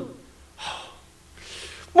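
A man's two audible breaths at a close microphone between spoken phrases, one about half a second in and one near the end, just before he speaks again.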